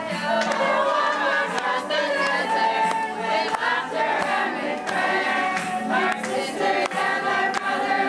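An amateur cast of young women singing together as a chorus.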